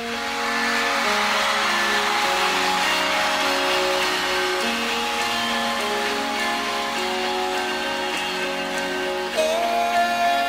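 Live rock band opening a song: electric guitar playing slow, long ringing notes over a steady wash of noise, with a sliding rising note near the end.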